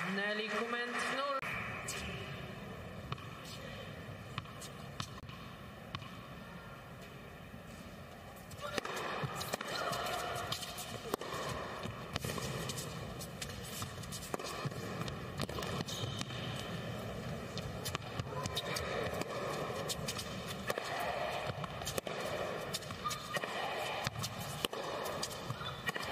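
Indoor tennis match sound: a low crowd murmur between points, then from about nine seconds in a rally, with repeated sharp racket-on-ball strikes and footsteps on the hard court.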